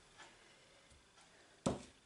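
A single short knock of glass, about three-quarters of the way in, as the small glass dish that held the butter meets a hard surface after the butter is tipped out; otherwise quiet.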